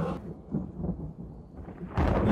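A low, uneven rumble that fades over the two seconds.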